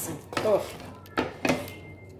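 A wooden spatula stirring a thick stew in a speckled non-stick pot, with two sharp knocks of the spatula against the pot just after a second in.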